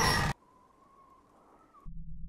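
A voice cuts off sharply about a third of a second in, leaving near silence with only a faint, thin, steady tone. A low hum comes in near the end.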